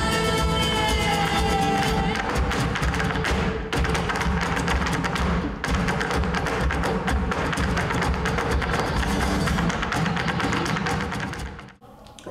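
Two Irish hard-shoe step dancers beating rapid taps on a raised wooden stage, over a live Irish traditional band with fiddle and plucked strings. The music and taps cut off suddenly just before the end.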